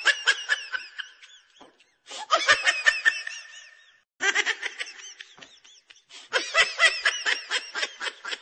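High-pitched laughter in quick repeated pulses, coming in several bursts broken by short gaps.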